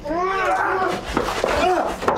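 A man's strained, wordless cries of effort and pain during a struggle, several in a row, each rising and falling in pitch.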